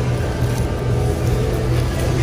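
Steady low hum of supermarket background noise, such as refrigerated display cases and air handling, with a few faint clicks.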